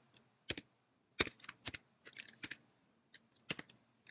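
Typing on a computer keyboard: about ten separate keystrokes, some single and some in quick runs of two or three, with short pauses between them.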